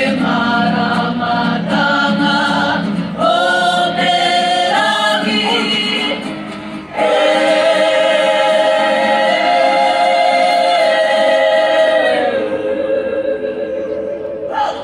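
Māori kapa haka group, men and women, singing together in harmony. Short phrases give way, about halfway through, to a long held chord that steps down to a lower held note near the end.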